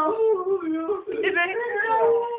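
A teenager's voice wailing in a long, high, wavering whine that slides up and down in pitch without a break, like put-on crying.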